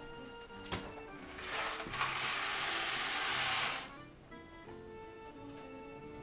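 Background music, with a rush of noise lasting about two seconds in the middle: dry macaroni being poured from its box into a pot. A single sharp click comes just before it.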